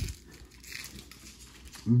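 Faint rustle of cardboard trading cards sliding against each other as a stack is flipped through by hand, one card moved past the next.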